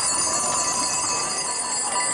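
Many small metal bells jingling together in a steady, continuous ringing.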